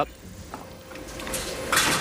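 Bowling-alley room sound, then a short hard clatter about three-quarters of the way through as a bowling ball is lifted off the ball return and knocks against the balls beside it.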